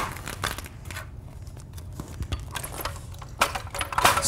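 Carpet power stretcher being worked at its toothed head: scattered clicks and rustles of the tool and carpet, a few near the start and a cluster near the end.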